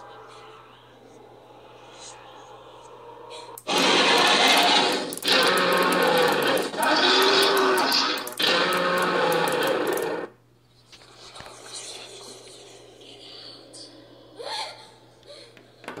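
A Halloween sound effect played through a small speaker: a loud, harsh noise with a moaning voice in it, in three bursts over about six seconds with short breaks between, cutting off suddenly.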